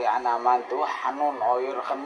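Speech only: a voice talking without pause.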